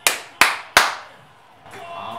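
Three sharp hand claps, evenly spaced about a third of a second apart, each ringing briefly in a small room: a short burst of applause for a scored penalty.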